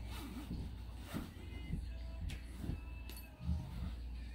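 Zipper on the large pouch of a fabric backpack being pulled open in several short tugs, over a steady low hum.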